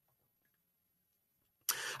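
Near silence during a pause in speech, then a man's voice starts again near the end.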